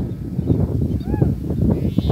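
Wind buffeting the microphone, a low irregular rumble. A short call that rises and falls in pitch comes a little after a second in.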